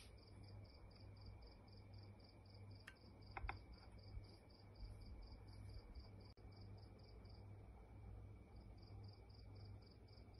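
Faint insect chirping, cricket-like, in a steady run of short high chirps about three a second, pausing for about a second near the end. A couple of faint clicks about three and a half seconds in.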